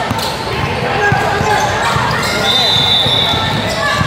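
Spectators' voices and calls at a basketball game, with players on the court and a high steady tone lasting about a second midway.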